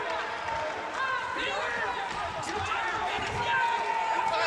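Voices calling and shouting from ringside during a boxing bout, with a few short knocks and thuds from the ring.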